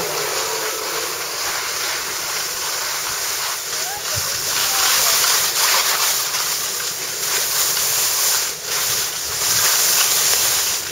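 Skis sliding over soft, slushy spring snow on a downhill run, a steady rushing hiss mixed with wind on the microphone, swelling and dipping with the turns.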